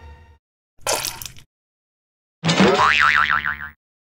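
Cartoon sound effects: a short noisy whoosh about a second in as the toy's spray-gun launcher fires, then a springy cartoon boing with a wobbling pitch lasting about a second.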